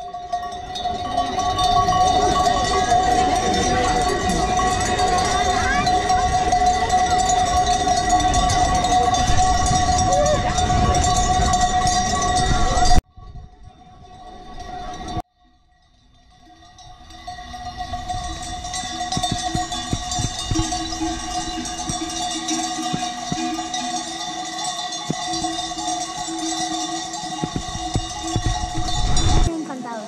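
Many sheep bells clanking together continuously as a large flock is driven along, with a steady jangle of overlapping ringing tones. After a break about halfway through, the bells go on again more quietly as sheep graze.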